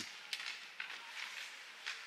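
Ice rink ambience during a hockey faceoff: a steady hiss of skates on the ice and arena noise, with a few sharp clacks of sticks and puck.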